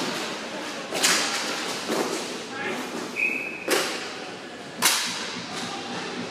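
Sharp cracks of inline hockey sticks and puck striking the floor and goal, three loud ones: about a second in, near the middle and about five seconds in. A short high steady whistle sounds just before the middle crack, with voices throughout.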